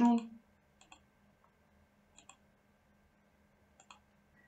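Computer mouse clicking: three quick pairs of clicks about a second and a half apart.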